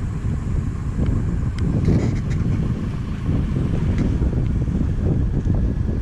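Wind buffeting the microphone over the rumble of a vehicle driving along an unpaved dirt road.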